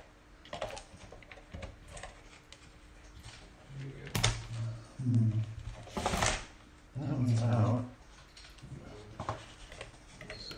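Clicks and clacks of plastic and metal as an Apple Extended Keyboard II's case is handled and pried apart by hand, with two sharper snaps about four and six seconds in. Short low vocal sounds from the man working come in between, the loudest around seven seconds in.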